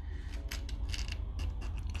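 A pin scratching and picking at set-hard dalgona honeycomb candy stuck in a nonstick frying pan: a run of small irregular ticks and scrapes.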